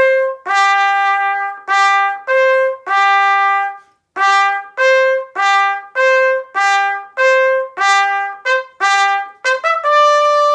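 Solo trumpet playing an orchestral first-trumpet excerpt as a string of separate notes that move back and forth between two or three pitches. There is a short break about four seconds in, and a few quicker short notes near the end.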